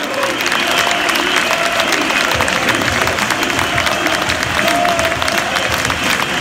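A large football crowd applauding: dense, steady clapping from many hands, with a few voices calling out over it.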